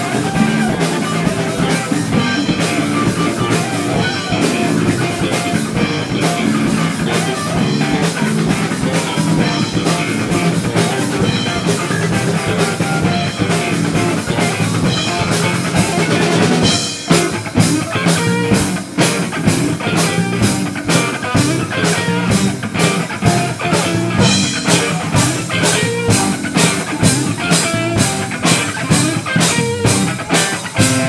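Live rock band playing loud with electric guitar, bass and drum kit. About halfway through the music drops out for a moment, then comes back in on a steady, driving drum beat.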